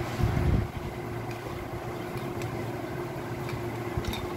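Steady low mechanical background hum with a constant tone in it. A low bump comes in the first half-second and a few faint clicks follow as the metal fuser-roller frame is handled.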